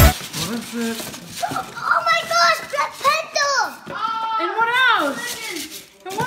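A young child's excited, high-pitched vocal exclamations, rising and falling in pitch, with no clear words.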